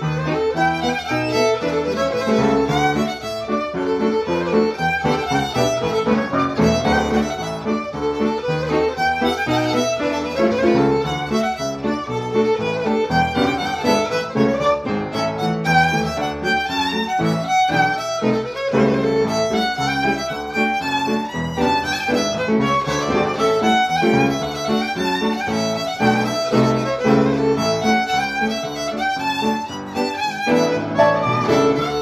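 Electric violin (fiddle) and upright piano playing a French Canadian reel together: a continuous run of quick fiddle notes over piano accompaniment.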